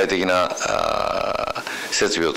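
Speech only: a man talking in Japanese, with one drawn-out syllable held for about a second in the middle.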